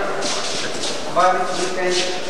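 Indistinct men's voices talking in a crowded room, over a steady hiss.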